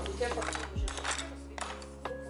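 Soft lofi background music with a steady bass line, over a few light clinks of a cup against a glass jar as water is poured into glaze and the cup is set down.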